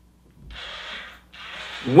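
A man breathing in the pause between sentences: two audible breaths, the first about half a second in and the second just before he speaks again.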